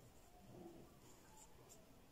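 Near silence: a faint rustle of hands moving over fabric and a zipper tape, with a couple of soft ticks in the second half.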